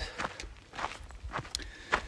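Footsteps on a dry dirt trail, about one step every half second, four steps in all.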